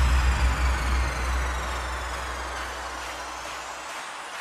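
Bass-boosted electronic dance music in a beatless breakdown: a held deep bass note under a noise sweep with faint falling tones, fading steadily. The bass cuts off just before the end.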